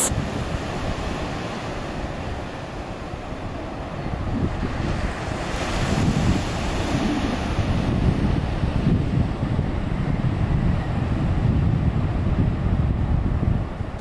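Sea surf breaking and washing up a beach, growing louder about a third of the way in, with a wave surging near the middle. Wind rumbles on the microphone.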